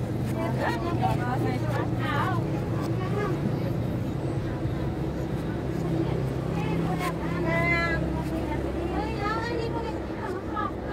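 People's voices talking in the background over a steady low hum.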